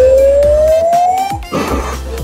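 An electronic sound effect: a single pure tone sliding steadily upward for about a second and a half, then a short burst of noise.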